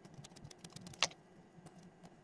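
Clear plastic sheet crinkling in a quick run of small clicks as it is peeled off a flattened slab of clay, with one sharper click about a second in.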